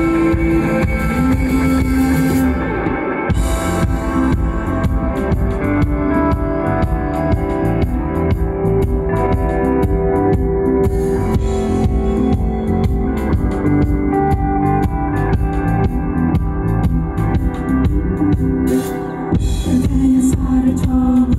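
Live rock band playing an instrumental passage: electric guitars over a drum kit, with a short break about three seconds in.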